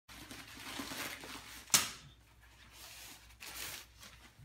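Plastic bubble-wrap packaging rustling and crinkling as it is pulled open and off a folded play tent, with one sharp snap a little under halfway through, the loudest sound, and a second short burst of crinkling near the end.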